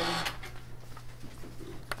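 Meeting-room tone in a pause between spoken words: a steady low hum with a few faint ticks, and one short click just before speech resumes near the end.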